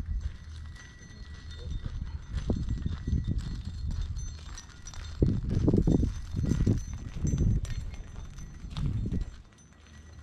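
Footsteps crunching on gravel, heaviest from about halfway through, with sharp clicks and clinks from the tie-down straps being carried, over a low steady rumble.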